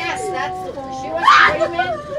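Children's voices talking and calling out inside a school bus, with a louder cry about one and a half seconds in.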